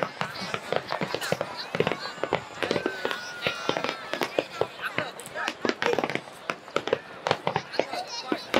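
Aerial fireworks bursting overhead: a rapid, irregular string of bangs and crackles, with voices of onlookers in between.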